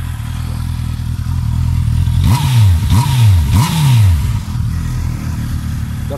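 2019 Honda CB650R's inline-four engine idling, then revved three times in quick succession about two seconds in, each rev rising and dropping back, before settling back to idle.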